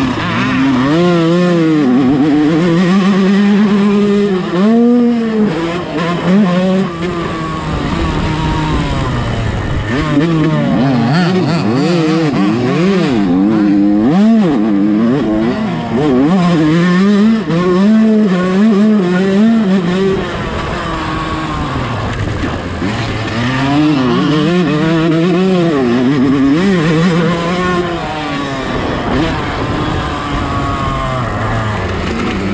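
A 125-class motocross bike's engine under race load, heard up close: it revs up and drops back again and again as the rider accelerates, shifts and rolls off for the track's jumps and turns.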